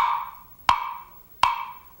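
Three sharp, evenly spaced knocks on a small hollow wooden box, each with a short ringing tone: a knock-at-the-door sound effect.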